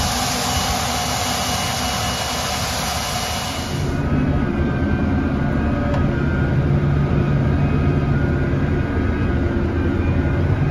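Tractor pulling a seed drill across the field, heard outdoors as a steady rushing noise. About four seconds in it gives way to the steady drone of a tractor engine heard from inside the cab.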